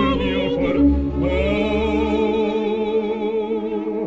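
Operatic singing: a soprano voice with wide vibrato holds sustained high notes over a lower male voice, moving to new notes about a second in.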